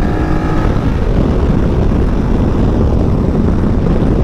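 BMW touring motorcycle riding at speed, heard from the saddle: a steady engine drone under wind and road noise, with a faint steady engine tone in the first second.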